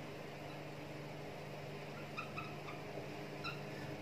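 Marker squeaking on a whiteboard in a few short, faint chirps about two seconds in and again near three and a half seconds, as bullet points are drawn, over a steady low hum.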